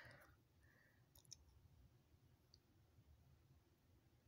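Near silence: room tone with a low hum and a few faint clicks about a second in.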